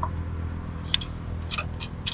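Car engine-oil dipstick being slid back down into its tube: a few short metallic scrapes and clicks in the second half, over a steady low hum.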